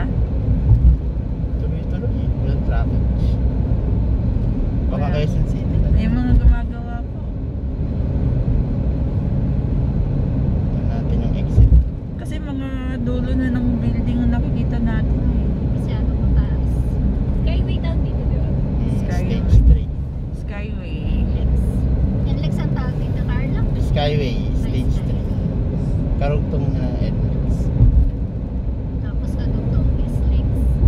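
Car cabin noise while cruising on an expressway: a steady low road and engine rumble, with a short low thump every five to eight seconds.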